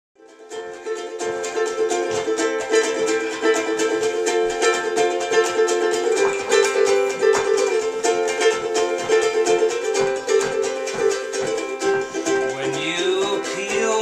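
Ukulele strummed in a fast, even rhythm over steady chords, fading in at the start. A man's singing voice comes in near the end.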